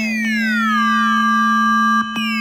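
Electronic alarm sound effect for a computer alert: a high tone falls steadily in pitch for about a second and then holds, over a steady low hum. The falling sweep starts again right at the end.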